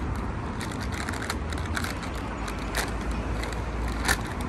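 Crisp packet being handled, giving a few short, sharp crinkles, over a steady low rumble.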